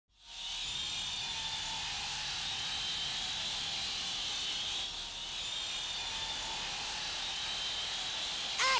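Steady whirring, hissing noise with faint high whistling tones drifting through it. It fades in at the very start and dips briefly about five seconds in.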